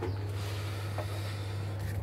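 A jacket sleeve rustling against the microphone as an arm moves, with one faint click about a second in, over a steady low hum.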